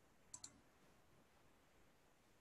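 Two quick clicks about a tenth of a second apart, like a computer mouse double-click, then near silence.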